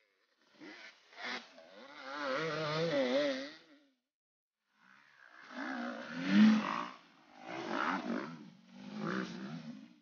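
Off-road racing dirt bikes passing close, one after another, their engines revving hard in separate bursts of throttle with the pitch wavering as they work over rough ground. The loudest pass comes about six and a half seconds in.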